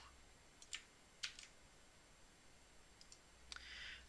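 A few faint, isolated clicks of a computer mouse and keyboard as code is selected and replaced, over near-silent room tone.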